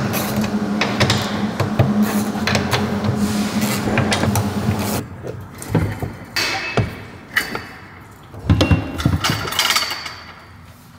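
Ratchet wrench undoing the bolts of a viscous coupler mount under a car. There is a steady hum with rapid clicking for about five seconds, then scattered metal clicks and clanks as the mount is freed and worked loose from the jack.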